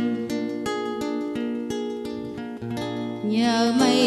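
Acoustic guitar playing a passage of separate plucked notes between sung phrases; a woman's singing voice comes back in about three seconds in, over the guitar.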